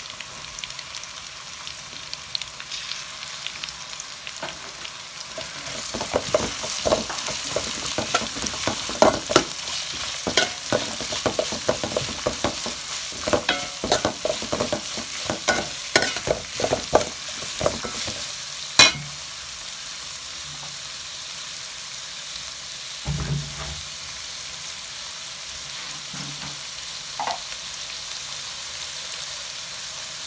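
Sliced onions sizzling in hot oil in a steel pot. From about six seconds in, a metal spoon clinks and scrapes against the pot as they are stirred, with one sharp clink near the end of the stirring, after which the steady sizzle goes on alone.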